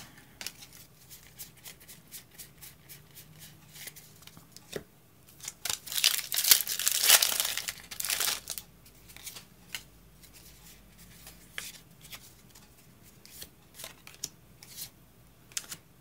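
Foil wrapper of a Pokémon trading-card booster pack being torn open and crinkled, loudest midway through, amid light clicks and rustles of cards being handled.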